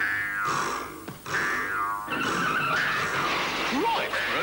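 Cartoon spring 'boing' sound effects of pogo sticks bouncing, each falling in pitch, about one every 0.8 s, over music. In the last two seconds they give way to a denser, noisier jumble.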